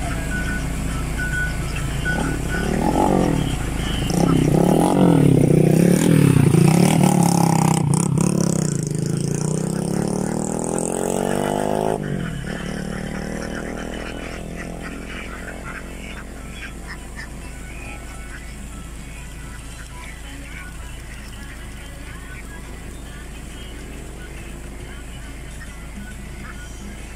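A motor vehicle passing, loudest in the first twelve seconds and then fading away, over a large flock of domestic ducks quacking.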